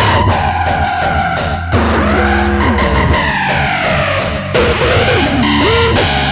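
Hard-dance (newstyle/hardcore) electronic music: a steady fast beat with heavy bass under synth lines that glide and bend in pitch, one falling steadily about halfway through.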